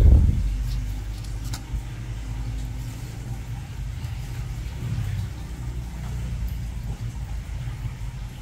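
A low rumble runs throughout, with a loud thump right at the start.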